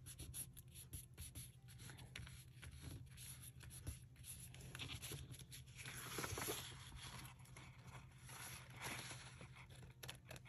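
Paper and a thin paper napkin being pressed, folded and slid across a cutting mat by hand: faint rustling and scraping with small clicks, louder about six seconds in and again near nine seconds.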